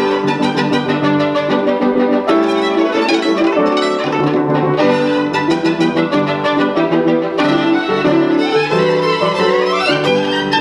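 Violin playing a classical piece, sustained bowed melody notes over a busy accompaniment of rapidly repeated notes, most likely piano.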